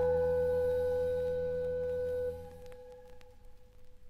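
Final sustained chord of a Yamaha Electone electronic organ, a steady organ tone over a bass, cutting off about two seconds in. One higher note lingers briefly, then only faint hiss and a few clicks remain.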